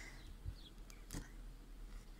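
Faint handling sounds of a toothbrush being worked into potting soil among succulent cuttings to loosen it: two soft clicks, the second, about a second in, the louder. A faint short bird chirp is heard once.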